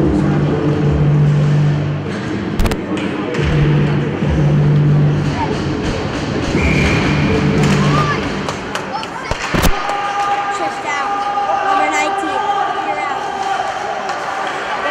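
Ice rink sound: music over the arena speakers during the stoppage, stopping about eight seconds in, with a sharp knock about a third of the way through and a louder one near ten seconds. Voices call out over rink noise as play resumes.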